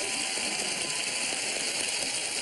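Studio audience applauding, a steady wash of clapping.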